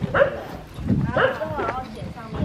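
A dog barking, two short barks about a second apart, over the chatter of a crowd.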